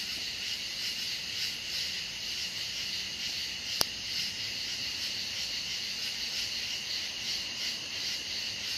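A steady chorus of night-singing insects, a high continuous pulsing trill, with one sharp click a little before halfway.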